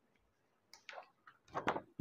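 Paper being handled as a printed sheet is picked up: a few faint crinkles about a second in, then a louder burst of rustling near the end.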